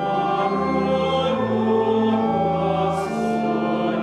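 A church hymn sung by many voices with organ accompaniment, in slow notes held about a second each.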